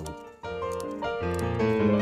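Background keyboard music playing steady sustained notes, with a brief dip at about half a second in.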